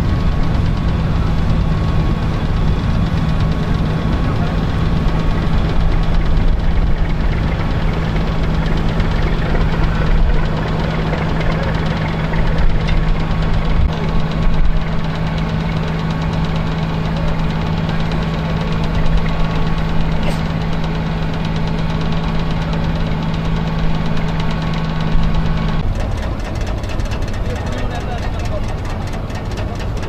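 Engine of a river passenger launch running steadily, a constant low drone with a steady hum under it, with indistinct voices over it. The hum stops shortly before the end, leaving a rougher engine noise.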